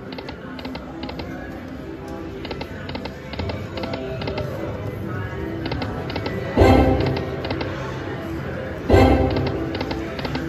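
Wild Wild Nugget video slot machine's game audio over several spins: its music runs with rows of short clicks as the reels spin and stop. A louder swell of game sound comes twice, about two-thirds through and again near the end.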